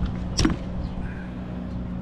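A single sharp click about half a second in as a propeller blade pin is pulled and the blade comes free of the hub, over a steady low machine hum.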